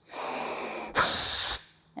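A person blowing through a plastic Y-connector into two taped-on balloons, testing that the seals hold and the balloons fill. There are two breathy rushes of air, the second louder and shorter.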